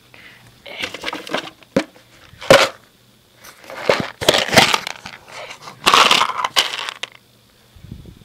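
Rustling and crackling handling noise close to the microphone, in several loud bursts with short pauses between them.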